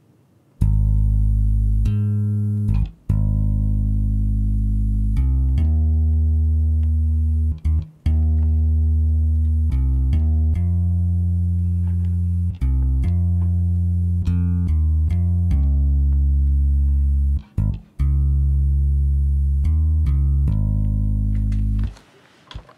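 A sampled electric bass, played by MIDI from a keyboard as a virtual instrument, plays a slow blues bass line on its own. It starts about half a second in, with sustained low notes changing every second or so and a few brief gaps. A faint high-pitched buzz, screen-capture feedback, runs underneath.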